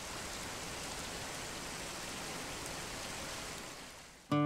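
Steady rush of falling water from a waterfall, fading out near the end.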